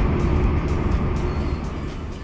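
Steady engine and road rumble heard inside a moving car's cabin, easing slightly near the end.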